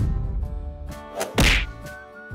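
A cartoon whack sound effect as an animated egg splits open, a single hit about one and a half seconds in with a short swoosh just before it, over quiet background music.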